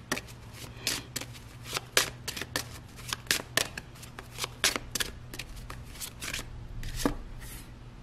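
A tarot deck shuffled by hand: a run of soft, irregular card snaps and flicks.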